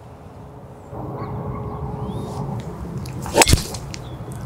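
A golf driver striking a ball off the tee: one sharp crack about three and a half seconds in, over a low steady background rumble.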